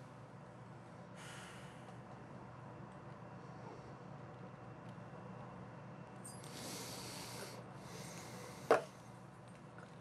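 A person breathing through the nose while gulping a drink: two hissy breaths of about a second each, then a short sharp breath out after swallowing, over a low steady room hum.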